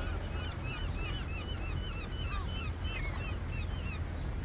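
Birds chirping: many short, quick, high notes overlapping in a steady chorus over a low rumble.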